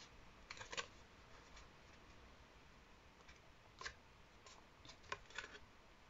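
Near silence with a few faint, short rustles and clicks of cardstock being handled and pressed together by hand: a small cluster about half a second in, one near the middle, and several more near the end.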